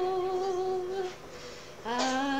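A woman singing unaccompanied, holding a long note with vibrato that ends about halfway through. After a short breath, the next phrase begins on a lower note near the end.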